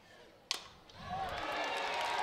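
A softball bat strikes the pitched ball once, a sharp crack about half a second in, and the crowd's cheering swells right after as the ball carries deep.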